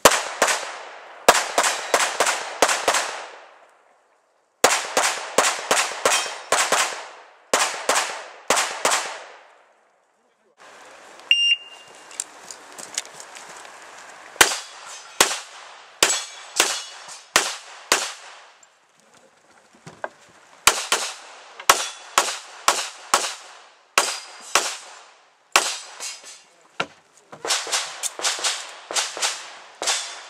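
Pistol fire in rapid strings, several shots a second with short pauses between strings, during an IPSC practical shooting stage. About eleven seconds in, a short electronic shot-timer beep sounds and starts a new string of shots.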